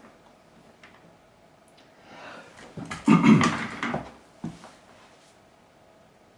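Quiet handling noises at a workbench: a few faint clicks, then a louder shuffling rustle lasting about a second around three seconds in, and a single sharp knock shortly after, over a faint steady hum.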